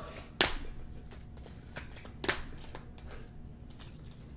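Hands handling a stack of trading cards on a table: a few sharp clicks and taps, the loudest about half a second in and another a little after two seconds, with fainter ticks between.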